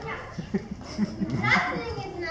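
Children's voices speaking and calling out, loudest in a rising, higher-pitched call about one and a half seconds in.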